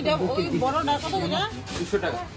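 People talking, with a hissing noise in the second half.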